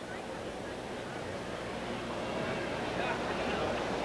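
Racetrack background of indistinct crowd voices mixed with a vehicle's engine, most likely the mobile starting gate car rolling ahead of the field. It gradually grows louder.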